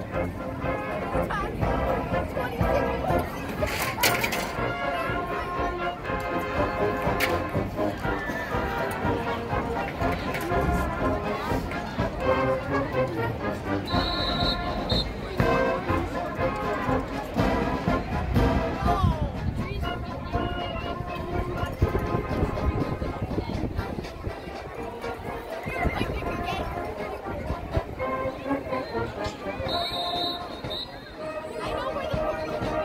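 High school marching band playing in an open-air stadium, with crowd chatter underneath.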